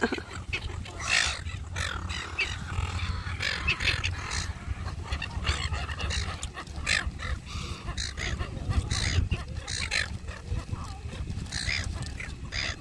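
A flock of silver gulls squawking: many short, harsh calls one after another, over a steady low rumble of wind on the microphone.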